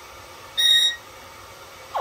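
Yellow-headed Amazon parrot giving one short, steady, beep-like whistle about half a second in.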